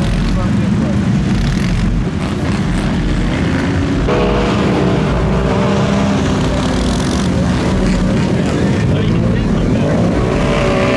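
ATV (quad bike) engines revving hard as the quads drive through a muddy water hole, with engine noise throughout. From about four seconds in, one engine holds a steady high-revving note.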